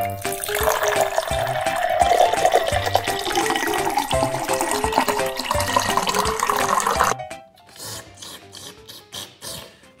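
Water running or pouring for about seven seconds, then cutting off suddenly, over light background music.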